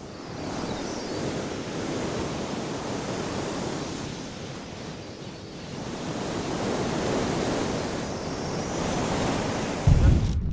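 Steady rushing of wind and sea water at the shore, with no other clear event.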